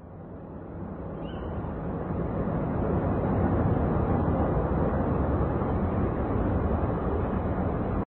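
A steady, dull rushing noise with no music. It swells over the first three seconds, holds level, and cuts off suddenly at the end.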